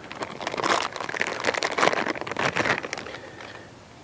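Rustling and crinkling of packaging as a camera is handled and lifted out of its small carrying case, with scattered clicks and knocks, quieter toward the end.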